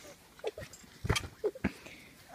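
A child's body thumping on a trampoline mat, with two heavier thumps, one about a second in and one shortly after, and short grunts between them.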